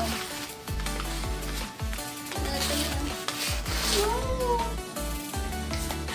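Paper wrapping crinkling and rustling as a package is torn open by hand, over background music.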